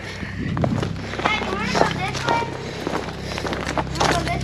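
Footsteps on dry leaf litter and twigs along a dirt trail, a run of short rustling steps, with a faint voice heard briefly in the middle.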